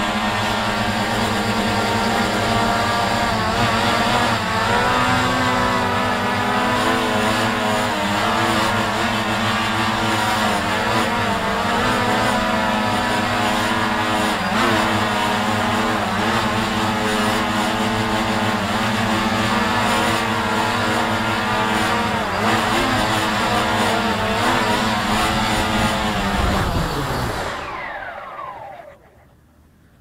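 Quadcopter drone's motors and propellers whirring steadily, the pitch wavering as the motors adjust speed during the descent onto the landing pad. Near the end the motors spin down, the whine falling in pitch and dying away.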